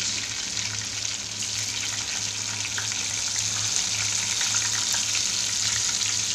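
Whole spices (bay leaf, cardamom and cumin seeds) sizzling steadily in hot oil in a nonstick kadhai, with a fine crackle throughout as the tempering fries.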